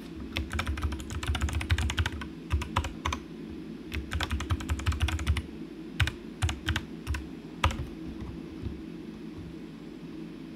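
Typing on a computer keyboard: a quick run of keystrokes for about five seconds, then a few scattered key presses that stop about three-quarters of the way in.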